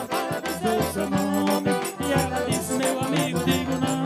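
Live northeastern Brazilian forró-style band music: accordion playing over a quick, steady beat from a zabumba bass drum and light rattling percussion, with a man's voice singing into a microphone.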